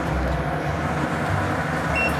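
A steady rushing noise with a low rumble from a pan of curry simmering on a gas stove.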